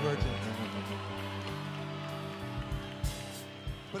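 Live rock band vamping quietly on a held chord under the singer's stage talk, with a few low drum thumps.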